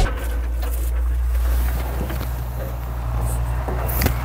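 Everun ER408 compact wheel loader's 25 hp three-cylinder engine idling, a steady low hum.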